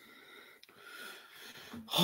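A person's faint breathing close to a microphone, a little stronger about a second in.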